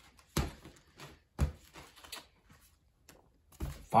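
Plastic trading-card sleeve page being handled and turned, giving a few soft crinkles and knocks, the loudest about a second and a half in.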